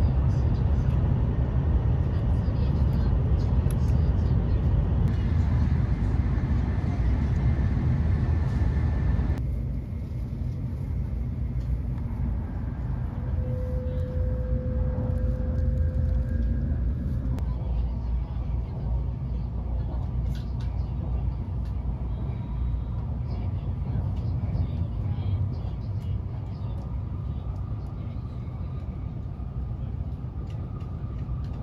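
Steady low rumble of a Shinkansen bullet train heard from inside the passenger cabin. The sound changes abruptly twice early on, where the clip is cut, and is quieter after the second cut.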